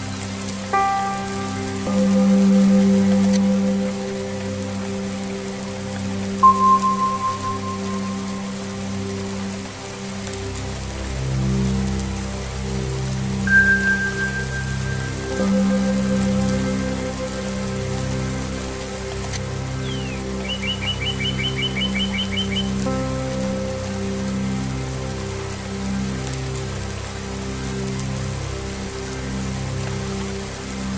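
Steady rain with slow Tibetan singing-bowl music: long ringing tones that enter one after another and slowly pulse. A bird chirps a quick run of repeated high notes about two-thirds of the way through.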